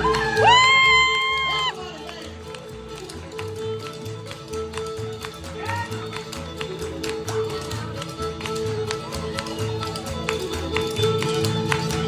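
Live bluegrass band music from fiddle, acoustic guitar and banjo, with a loud held high note near the start, then quieter playing. Dancers' feet tap sharply and quickly on the concrete floor throughout.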